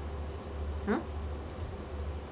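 One short vocal sound rising in pitch about a second in, over a steady low hum.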